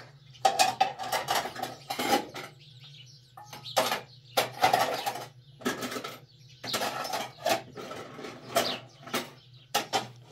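Dishes and kitchenware clinking and knocking as they are handled and moved about on a shelf: many short, irregular clatters, over a steady low hum.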